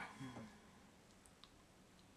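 Near silence in a small room: a short murmur of a voice at the start, then a couple of faint clicks about a second and a half in.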